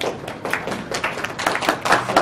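An audience in a small room applauding: a dense, irregular run of hand claps.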